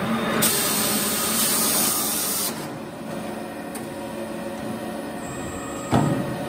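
Prima Power PSBB punching-shearing-bending system at work: a loud hiss, typical of a compressed-air blow-off, lasts about two seconds and cuts off suddenly. It leaves a quieter steady machine hum, and a sharp click comes at the very end.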